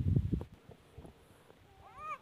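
Loud low rumble of the phone being moved and handled for the first half-second, then quiet. Near the end comes a short, high-pitched animal call rising in pitch, mewing like a cat.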